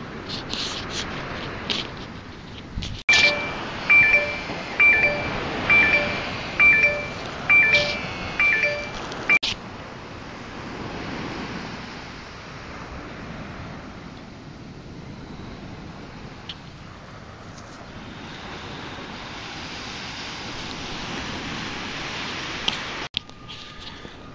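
Metal detector giving a regular run of short beeps, about one every 0.8 seconds for some six seconds, as the coil is swept back and forth over a buried target. Around it, a steady hiss of wind and surf.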